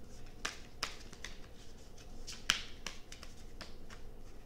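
Tarot cards being shuffled by hand, the cards slapping together in a string of sharp, irregular clicks, the loudest about two and a half seconds in.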